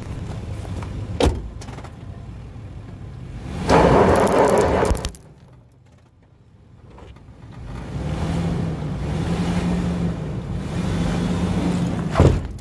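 2003 Nissan Pathfinder's V6 engine running as the SUV crawls over rocks, with a sharp knock just after a second in. A loud rushing burst lasting about a second comes near four seconds in. After a quieter moment, the engine drones steadily under load through the last few seconds.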